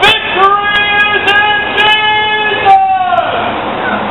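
A loud voice calling out in long, drawn-out phrases, each held about a second before breaking off, typical of street preaching projected to passers-by.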